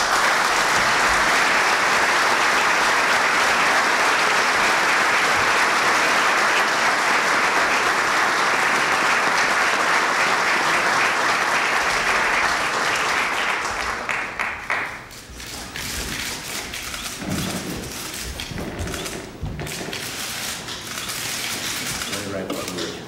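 Audience applauding steadily for about fifteen seconds. It then dies away into quieter room noise with scattered claps and clicks.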